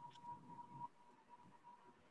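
Near silence: faint room tone over an online call line, with a thin steady whine in the background.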